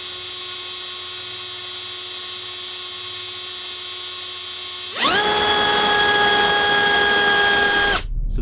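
BrotherHobby R4 Returner 2206 2300kv brushless motor on a thrust stand, spinning a 5x4x4 four-blade prop. It gives a steady whine at low throttle. About five seconds in it quickly rises in pitch and gets much louder as it is run up to full throttle, then holds steady.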